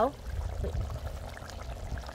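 Pot of beef curry bubbling at a simmer over a charcoal grill, a soft even hiss of liquid with a low rumble underneath.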